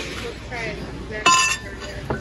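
Glassware knocking together: one sharp glass-on-glass clink a little past halfway, ringing briefly.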